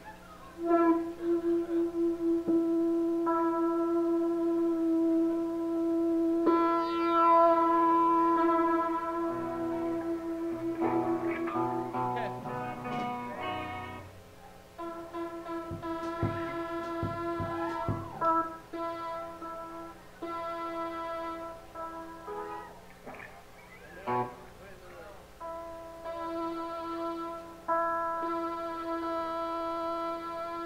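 Live rock band playing the opening of a song, with no vocals yet: long, held electric notes and chords that start and stop abruptly, and a few sharp hits from about halfway in.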